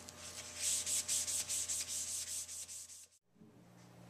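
Blue shop towel rubbing over a polyurethane-finished walnut burl travel mug in quick back-and-forth strokes, about five a second, buffing the finish. The rubbing cuts off abruptly about three seconds in, leaving faint room tone.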